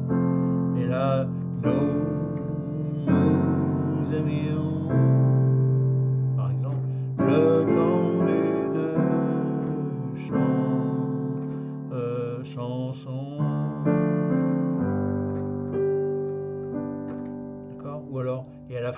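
Yamaha digital piano playing slow, sustained chords, the harmony changing every second or two.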